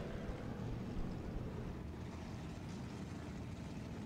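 IMCA Hobby Stock race cars' V8 engines running at low speed after the checkered flag, a faint, steady rumble with no sharp events.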